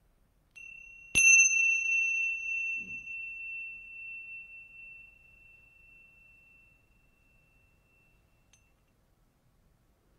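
Tingsha cymbals sounded once to open a moment of silent meditation: a faint first touch, then a clear strike about a second in, leaving a high bright ring that fades slowly over about seven seconds.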